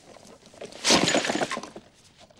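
Groceries dropping out of split plastic shopping bags and crashing onto a paved path: one sudden, loud clatter about a second in, lasting about half a second.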